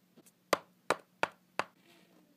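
Hard plastic Littlest Pet Shop figurines tapped against a hard shelf top as a hand moves them: four sharp clicks, about a third of a second apart.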